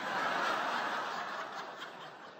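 Live audience laughing at a joke, swelling quickly at first and then dying away.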